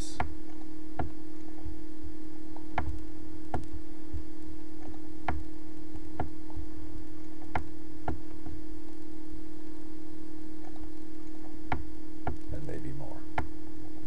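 Scattered single computer clicks, irregularly a second or two apart, as moves are stepped through in chess software, over a steady low electrical hum.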